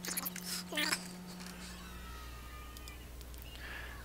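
A short, high cry that slides up in pitch, about a second in, over a faint steady low hum.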